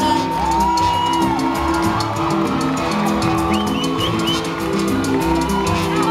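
A live salsa band playing, with long held melody notes over a steady percussion beat.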